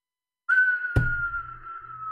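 A single steady whistling tone that starts suddenly about half a second in and slowly slides a little lower in pitch. About a second in there is a sharp click, and a low hum comes in after it.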